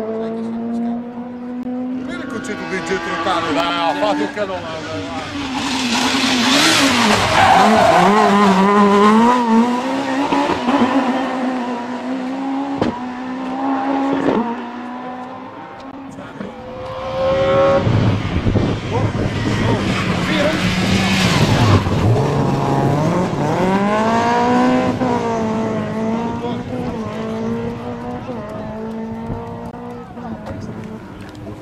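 Rally car engines revving hard through a tight bend, two cars one after the other. Each is heard with its engine pitch climbing and dropping as it brakes, shifts and accelerates away. Between the two passes there are a couple of sharp cracks.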